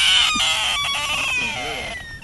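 A large frog's distress scream: one long, high wailing call given as it is grabbed and handled, slowly falling in pitch and fading out near the end.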